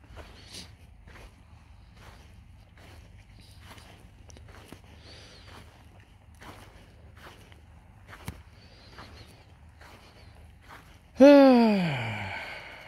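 Footsteps of a person walking steadily on a path, a little under two steps a second. Near the end a man's voice gives one loud, long 'ahh' that falls in pitch.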